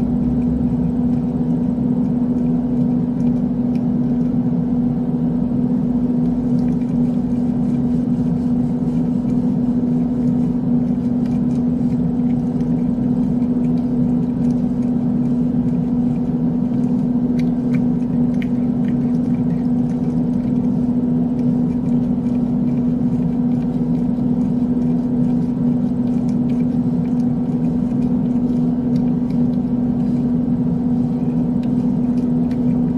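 Steady machine hum: one constant low tone with an overtone, unchanging in level throughout, with a few faint ticks about two thirds of the way in.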